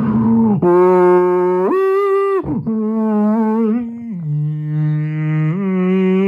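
A man singing long, held wordless notes into a microphone, amplified through a portable Monster speaker. The pitch steps between notes, leaping up sharply for about a second near the two-second mark before dropping back low. He clears his throat right at the start.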